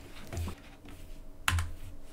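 Computer keyboard keys pressed a few times, short clicks with the sharpest about a second and a half in, as the presentation is advanced to the next slide.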